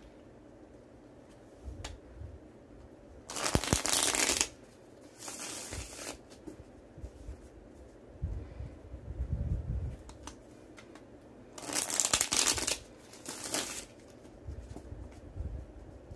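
A tarot deck being shuffled by hand, in short spells of dense card noise, first about three seconds in and again about twelve seconds in, with soft handling noise between.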